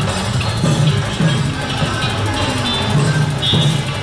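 Loud festival music led by drums and other percussion, playing continuously with a repeating beat.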